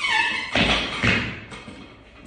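A series of heavy, dull thuds about every half second, with music under them.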